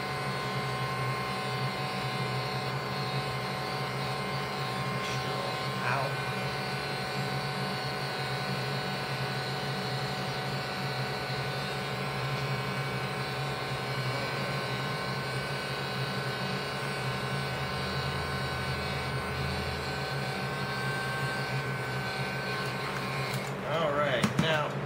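Handheld electric heat gun running steadily, its fan blowing hot air over the acrylic-painted PVC gauntlet to make the paint bubble up into a rough texture. It cuts off near the end.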